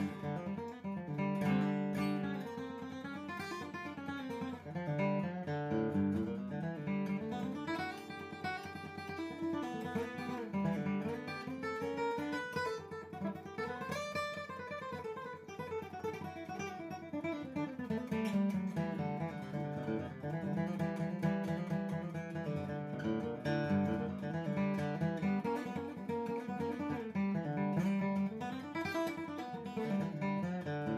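Background music: acoustic guitar, plucked and strummed.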